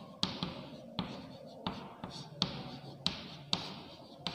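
Chalk tapping and scraping against a chalkboard as a word is written by hand: a string of short, sharp taps, roughly one every half to three-quarters of a second, with softer scratching between them.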